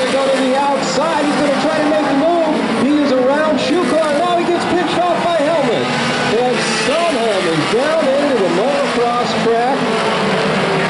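An indistinct voice talking without a break, over the steady noise of race cars running laps on a short oval track.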